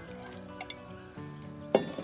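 Background music with a few light clinks of a metal jigger against a glass mason jar as a measure of Madeira is poured in.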